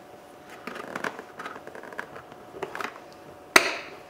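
Plastic door lock bezel being worked out of a door trim panel: faint scraping and small clicks as fingers press its clips, then one sharp snap about three and a half seconds in as the bezel pops free.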